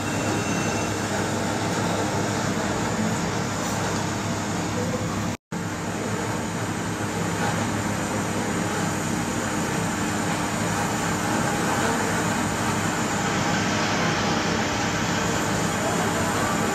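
Gas torch flame hissing steadily while melting gold, over a low steady hum; the sound cuts out for an instant about five seconds in.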